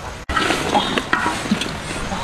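Whole peeled goose eggs and bamboo shoots sizzling in a large wok as they are stirred with a wire strainer, the hiss of frying dotted with small scraping clicks. It starts after a brief gap near the beginning.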